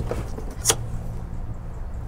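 A single sharp click about two-thirds of a second in, as the glove box door's metal stop strap is worked out of the dash, over a steady low hum.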